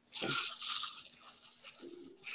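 Paper crinkling and rustling as wrapping is pulled open, loudest in the first second and then fading.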